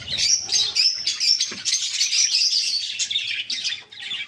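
A flock of budgerigars chattering, many high chirps overlapping without a break.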